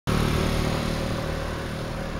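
Motorcycle engine running steadily at low speed, an even low hum that eases slightly over the two seconds.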